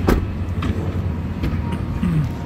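A 2015 Ford Expedition's side door shutting with one solid thud right at the start, followed by a steady low rumble.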